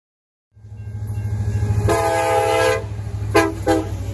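Diesel locomotive horn: one long blast of close to a second, then two short toots, over a steady low engine rumble that starts abruptly about half a second in.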